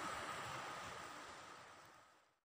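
Steady background hiss with a faint high tone in it, fading out steadily toward the end.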